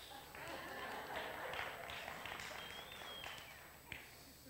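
Faint scattered applause from a congregation, dying away near the end.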